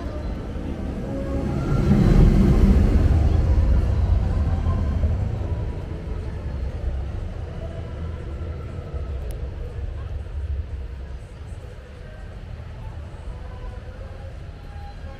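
Vekoma steel roller coaster train rumbling past on its track, swelling to a peak about two seconds in and fading away over the next few seconds.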